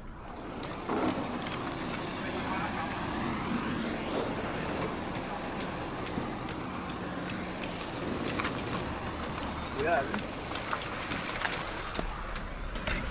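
Car on wet pavement in light rain: a steady rushing noise with many scattered sharp ticks, and faint muffled voices near the end.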